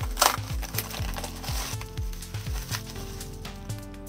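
A paper parcel being torn open and its wrapping crinkled by hand, with a few sharp rips in the first second, over background music with a steady beat.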